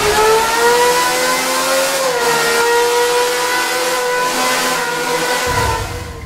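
Aston Martin Valkyrie's naturally aspirated 6.5-litre Cosworth V12 running at high revs, loud. Its pitch climbs over the first two seconds, then holds steady and dips slightly near the end.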